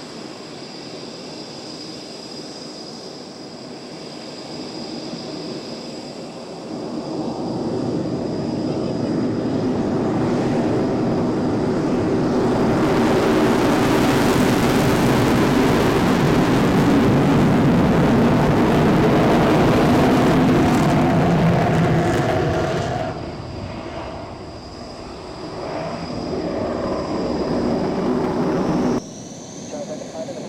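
Aircraft engine noise swelling as a departing aircraft passes, loudest for about ten seconds in the middle, then dropping away. It rises again briefly and cuts off suddenly near the end.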